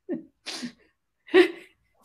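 People laughing in short bursts, with a breathy burst about half a second in and the loudest burst of laughter about one and a half seconds in.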